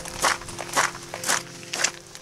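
Footsteps of a hiker in boots fitted with ice cleats, walking on a wet gravel path with patches of slushy snow; four steps about half a second apart.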